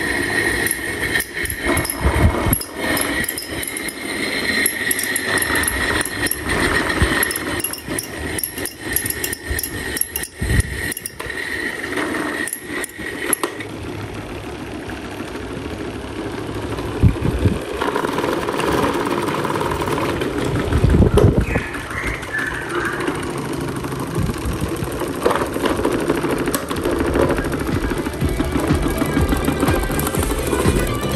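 Several small electric desk fans running at once with makeshift blades: motor hum with rattling and clicking from the blades and guards. A high steady whine runs through the first half and stops about halfway through.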